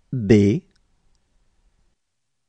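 Speech only: a voice says the letter B once, a single short syllable.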